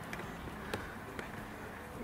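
Quiet background noise with a couple of faint, sharp clicks, about a second in and again a little later.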